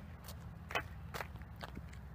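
Faint footsteps of sneakers on asphalt, a few light steps a little under half a second apart.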